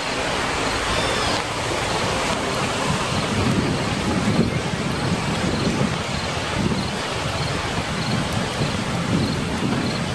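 Thunderstorm: steady heavy rain with low rolls of thunder swelling in the middle and near the end.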